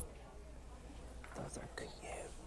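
Faint, indistinct voices in the second half, over a steady low hum, with a brief sharp click right at the start.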